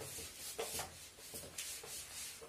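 Handwriting: a run of short scratchy strokes of a pen or marker as figures of an equation are written out.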